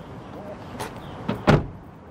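A car door shut with a solid slam about one and a half seconds in, just after a lighter knock.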